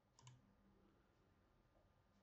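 Near silence, broken by a faint double click of a computer mouse about a quarter second in.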